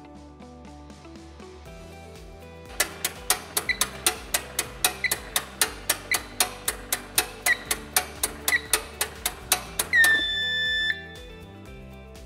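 Fast, even clicking, about five a second, from the seed drill's metering drive as it is turned by hand crank for calibration, with a short high chirp from the control terminal about once a second as the last turns count down. About ten seconds in, a long steady beep of about a second marks the end of the calibration turns. Background music throughout.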